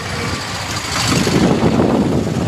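Street noise dominated by a motor vehicle running close by, growing louder about a second in.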